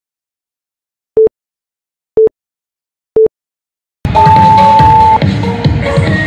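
Countdown timer giving three short beeps, one a second, then electronic dance music starts about four seconds in.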